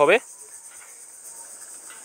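A voice breaks off just at the start, then a steady high-pitched hiss holds over low background noise until speech resumes.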